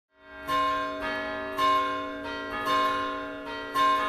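Bells ringing in a sequence, a new stroke about every half second with every other stroke louder, each note ringing on under the next.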